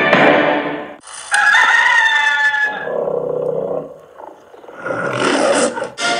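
Music fades out in the first second, then a long animal-like call with shifting pitch, in parts, the last part lower; a shorter call follows near the end.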